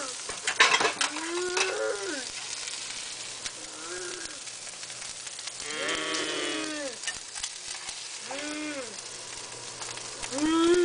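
Food sizzling in a hot frying pan as a spatula scrapes and stirs it, with four drawn-out, rising-and-falling moans from a person's voice over the top, the longest about six seconds in.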